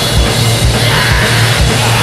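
Black metal song: distorted electric guitar, bass and drum kit playing loud, with a dense wall of guitar and repeated low kick-drum hits.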